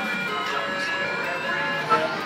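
Coin-operated Minions mini wheel kiddie ride playing its tinkly electronic tune while it runs, with voices in the background. There is a short loud knock just before the end.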